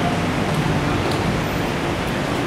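Steady street noise from road traffic: a continuous, even hiss.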